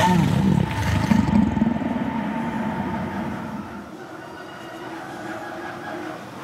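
A rumbling, whooshing sound effect that starts loud and fades away over about four seconds, leaving a faint steady hiss.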